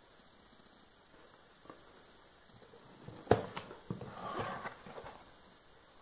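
A cardboard mailer box being opened by hand: one sharp snap about halfway through as the lid comes free, then a few lighter knocks and a second or so of cardboard and paper rustling.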